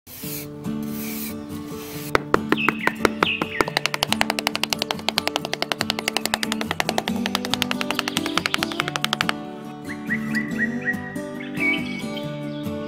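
Small hammer tapping in a fast, even run of several strikes a second, starting about two seconds in and stopping suddenly about nine seconds in. Background music with bird chirps plays throughout.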